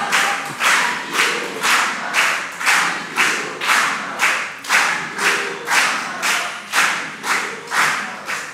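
Audience clapping in unison in a steady rhythm of about two claps a second.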